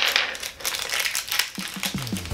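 A small plastic toy packet crinkling and rustling as it is handled and pulled open with the fingers.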